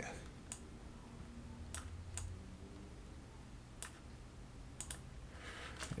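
A handful of faint, sharp computer-mouse clicks at irregular intervals, about six in all. Near the end a plastic bag starts to crinkle.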